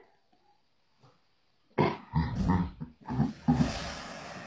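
A person's loud wordless vocal sounds, several uneven bursts beginning about two seconds in after near silence, the last ones breathy.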